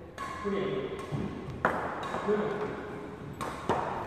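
Badminton racket strikes on a shuttlecock: one sharp hit a little over a second and a half in, then two quick hits close together near the end, each leaving a short ring.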